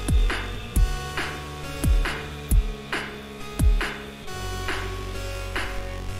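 Beatbox loop-station routine: looped vocal kick drums, each a deep boom falling sharply in pitch, and snare hits over sustained held bass and synth-like tones, with no hi-hats in the beat. About four seconds in the kicks drop out, leaving the held tones and lighter snares.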